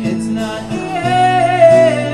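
Live acoustic duo: two acoustic guitars strumming while a man and a woman sing together, with a long held sung note that swells to its loudest near the end.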